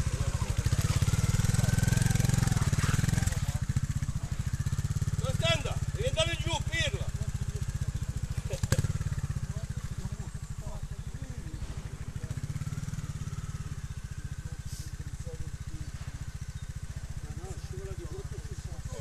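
Trials motorcycle engine running steadily, loudest in the first three seconds and then fading as the bike moves away. A single sharp knock comes about nine seconds in.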